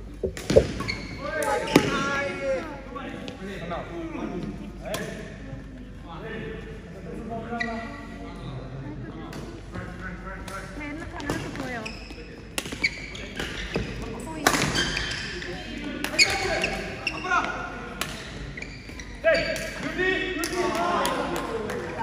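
Badminton rally: sharp racket strikes on a shuttlecock, a series of short cracks, with the loudest about half a second and two seconds in. People are talking and calling out through most of it.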